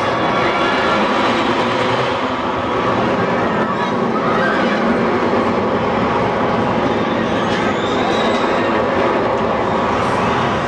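Lazer steel looping roller coaster's train running along its track: a steady rumble.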